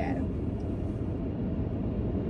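Steady low rumble of a car's cabin noise, heard from inside the car.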